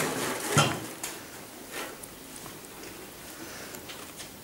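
Garlic cloves being handled on a plastic plate: a sharp knock just after the start, a couple of fainter clicks, then quiet room tone.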